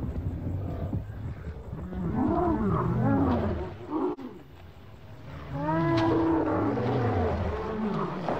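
Torosaurus calls from the film's sound design: low pitched calls that each rise and fall, one group a couple of seconds in and a louder group past the middle, with a quieter stretch between.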